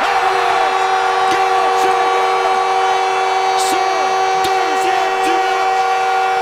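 Arena goal horn sounding a steady chord of held tones over a cheering crowd, signalling a home-team goal.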